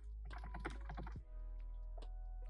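Typing on a computer keyboard: a quick run of keystrokes in the first second or so, then a pause. Soft background music with held notes and a steady low hum lie underneath.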